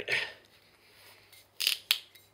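Metal cap being twisted by hand on a glass drink bottle: a short scraping grate about one and a half seconds in, then a sharp click just before the end.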